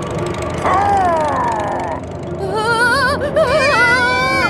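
Cartoon gale sound effect: a steady rush of wind, with two falling wails about a second in, then a wavering wail that climbs near the end.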